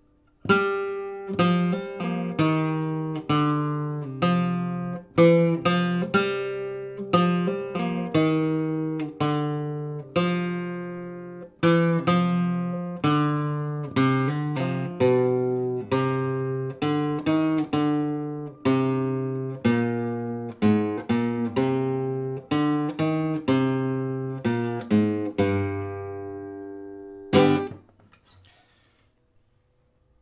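Nylon-string flamenco guitar playing a sevillanas slowly, a steady run of picked notes and chords, each ringing and decaying before the next. Near the end a final loud strummed chord is struck and quickly stopped.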